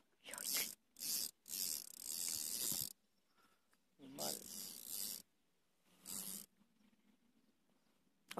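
Spinning fishing reel buzzing in five short bursts, the longest about a second and a half, while a hooked fish is being played.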